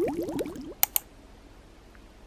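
The tail of a quick run of sliding-pitch music or sound-effect notes, fading out over the first half second or so. Two sharp clicks follow close together about a second in, then faint steady room noise.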